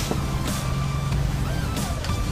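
Street market background noise: a steady low engine hum from motor traffic, with a few light clinks.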